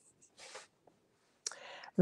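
Quiet room with faint, soft handling noise about half a second in. Near the end there is a click and a short breath, just before speech.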